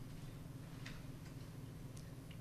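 Quiet room tone: a steady low hum with two faint clicks about a second in.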